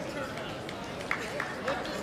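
Low chatter of spectators in a gym hall, with a few short high squeaks about a second in and again near the end, typical of wrestling shoes gripping the mat.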